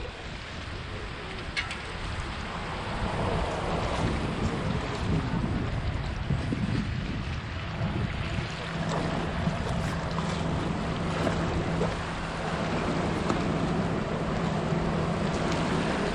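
Wind on the microphone over open sea water, with a steady low hum joining about halfway through.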